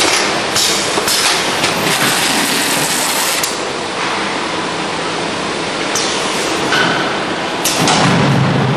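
Factory packing machinery running: a steady loud mechanical din with repeated knocks and clacks, loudest in the first three seconds.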